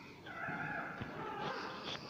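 A dog whining: one long, high-pitched cry lasting over a second.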